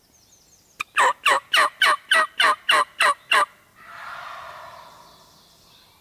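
Wild turkey calls: a run of about nine loud yelps, about three a second, followed about four seconds in by a fainter, longer rattling gobble.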